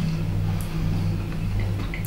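A steady low hum with no other clear events.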